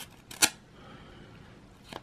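A knife blade slitting open the top edge of a paper envelope, with faint paper scraping and one sharp click about half a second in.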